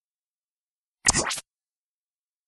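Golf swing sound effect of the club striking the ball: one sudden, loud burst of noise about a second in, lasting under half a second.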